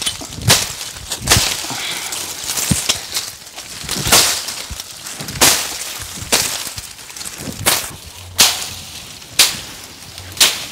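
Machete slashing through dry bush and grass: a series of sharp swishing cuts, roughly one a second at an uneven pace.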